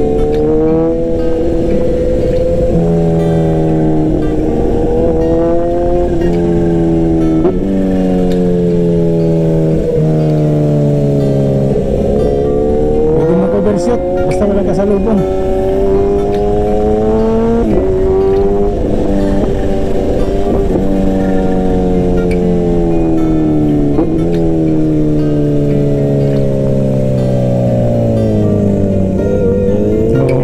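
Bajaj Dominar 400's single-cylinder engine running under way, heard from the rider's seat. Its pitch falls smoothly over a second or two, then jumps back up, again and again.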